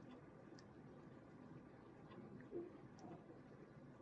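Near silence, with a few faint ticks and light handling noise from paper sheets being pressed and shifted on a table.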